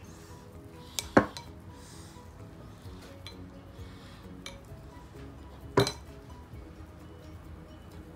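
Metal spoon clinking against a ceramic bowl twice, about a second in and again just before six seconds, knocked about by hands kneading sticky mochi dough, over soft background music.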